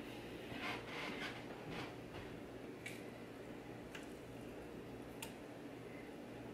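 Faint, soft, wet handling sounds of a freshly cored and sliced pineapple being touched and pulled apart by hand, several in the first couple of seconds, then a few light clicks.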